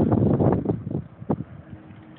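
Wind buffeting the microphone of a handheld phone, strong for the first half second or so and then dying away. A single sharp knock comes about a second and a half in.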